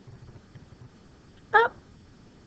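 Quiet room tone, then about a second and a half in a woman's voice gives one short, high, rising syllable, the word "up" called out while tracing the letter q.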